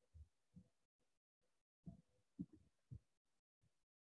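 Near silence, broken by several faint, short low thumps.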